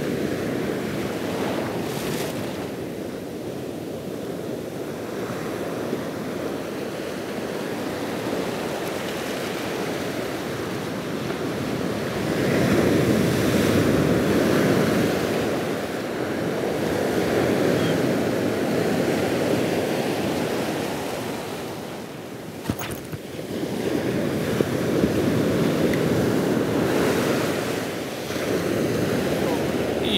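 Surf on a sandy beach: small waves breaking and washing up the shore, a continuous low rushing that swells and eases several times as the waves roll in.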